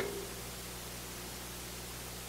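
Steady hiss with a faint low hum: the room tone of a microphone recording in a pause between words.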